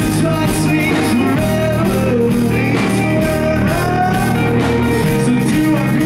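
Rock band playing live: a male lead vocal sung over electric bass, guitar and drums. Recorded right in front of the subwoofers, so the low end is distorted.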